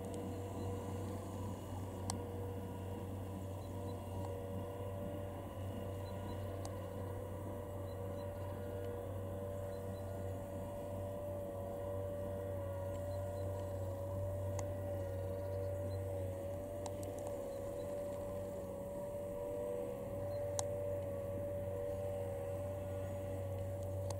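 A steady low mechanical hum with a faint, slightly wavering higher tone above it, and a few light clicks.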